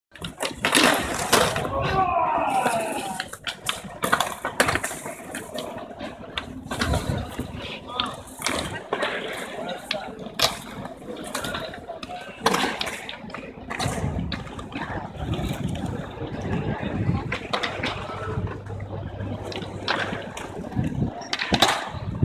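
Skateboards on stone paving: wheels rolling and repeated sharp clacks and slaps of boards hitting the ground, with people's voices around them.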